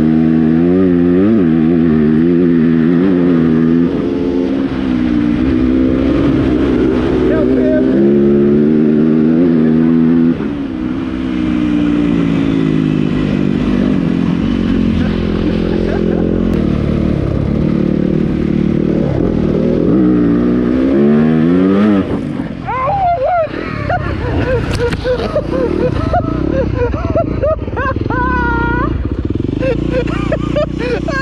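Yamaha dirt bike engine under way, its pitch rising and falling with the throttle and gear changes. Near the end the sound turns choppy, with sharp rising revs as a dirt bike climbs a steep bank.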